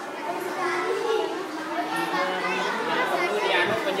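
Indistinct chatter of several overlapping voices, children's voices among them.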